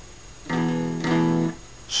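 Guitar strumming an E major chord twice, a short stroke then a longer one, about half a second apart. The chord is damped abruptly after about a second, in a short-long blues rhythm.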